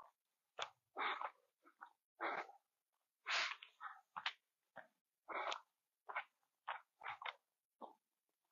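A runner breathing hard close to a phone microphone during a steep uphill climb. He sighs near the start, then breathes in quick, separate gasps about every half second to a second.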